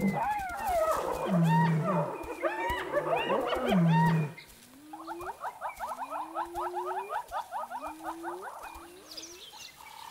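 Spotted hyenas calling in a loud, chaotic chorus of rising whoops and giggling cries mixed with short deep growls. After about four seconds it drops to a quieter stretch of repeated rising whoops over fast chattering.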